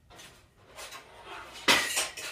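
A 20 kg tri-grip weight plate being put onto a barbell sleeve: faint scraping and handling, then a sharp metallic clank with a brief ring as it goes on near the end.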